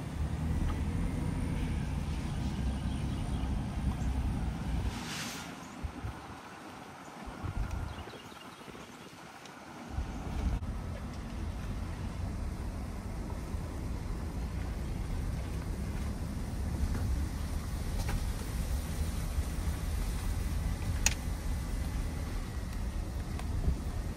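Car driving along a road, heard from inside the cabin: a steady low engine and tyre rumble. The rumble dies away for a few seconds from about five seconds in, then comes back about ten seconds in and runs on evenly.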